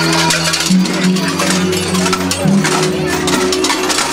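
Krampus costume bells clanging and jingling irregularly as the fur-clad figures move, over music with a steady low drone that shifts pitch a few times.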